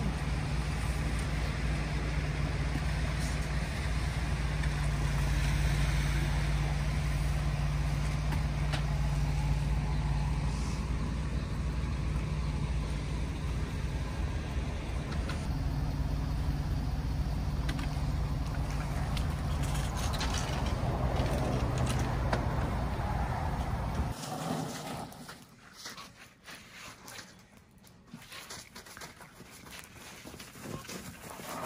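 A vehicle engine idling steadily, with a few light knocks as an aluminium loading ramp is handled. About 24 seconds in, the engine sound cuts off abruptly, leaving a much quieter stretch with scattered small clicks.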